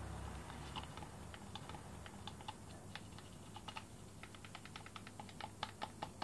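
Stir stick tapping and scraping against the sides of a plastic mixing cup, a quick irregular run of light clicks, as water-based paint is mixed with its reducer.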